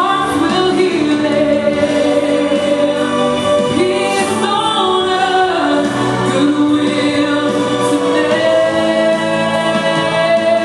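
Three girls singing together into handheld microphones, several voices holding and gliding between sustained notes at once.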